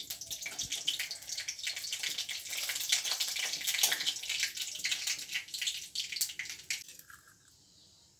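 Mustard seeds and dried red chilli crackling and spitting in hot oil in a kadhai, a dense run of sharp pops made fiercer by a little water that has got into the pan. The crackle dies down about seven seconds in.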